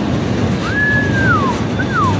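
Freight train of gondola cars rolling past: a steady rumble of wheels on rail. A thin high squeal comes in about two-thirds of a second in, holds, then falls in pitch, and a second short falling squeal follows near the end.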